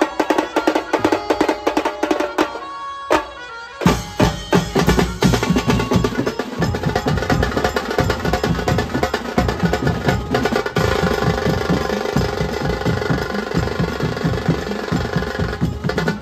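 Live Mumbai banjo-party band playing loud, fast festive music driven by a drum kit of toms and cymbals, with melody instruments over it. The bass thins out briefly about three seconds in, then the full band crashes back in at about four seconds, with a held melodic line later on.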